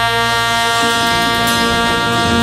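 Live jazz band holding a long sustained note, a horn prominent over the band.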